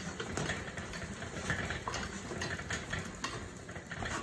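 GOPLUS elliptical cross trainer being pedalled: a steady whirr from its flywheel with faint, irregular clicks from the pedal linkage.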